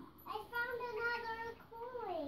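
A young child singing one long, held high note that rises slightly near the end.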